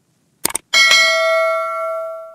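A quick double click, then a bright bell ding that rings on and slowly fades: the stock sound effect of an animated subscribe button's notification bell being switched on.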